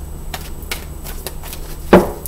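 Tarot cards being handled on a table: scattered light clicks and taps, then one loud knock near the end, over a steady low hum.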